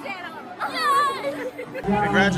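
Excited, high-pitched young girls' voices with chatter around them. Music with a deep bass comes in just before the end.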